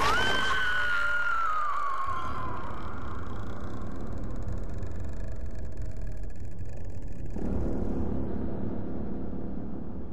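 Horror film soundtrack: a high wailing tone rises and then slowly falls over the first two or three seconds. A low rumbling drone follows, swells about seven seconds in and begins to fade near the end.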